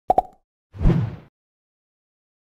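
Logo sting sound effect: two quick plops right at the start, then a short bass-heavy whoosh-hit about a second in that fades within half a second.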